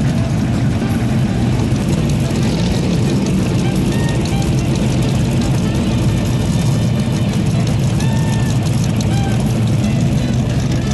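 Vintage Chevrolet Corvette V8 engines running steadily at low speed as the cars roll past in a line, a continuous deep rumble. A few faint short chirps sound above it.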